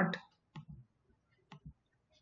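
Computer mouse clicking: a few quiet clicks in two pairs about a second apart.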